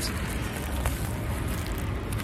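Wind rumbling on the microphone, a steady low noise, with one faint click a little under a second in.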